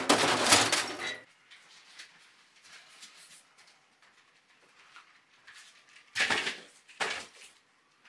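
Packing inserts being pulled out of a cardboard speaker box and handled: a loud scraping rustle in the first second, then faint rustling, and two short bursts of handling noise about six and seven seconds in.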